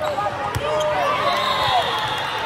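A volleyball struck once with a sharp smack about half a second in, over the steady din of players' and spectators' voices in a large hall.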